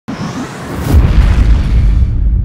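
Cinematic logo sound effect: a swell of hissing noise that hits a deep boom about a second in, followed by a sustained low rumble.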